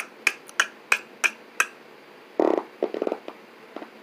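Finger snaps keeping a beat, about three a second, for the first second and a half, then a brief low vocal sound and a quick rattle of pulses about two and a half seconds in.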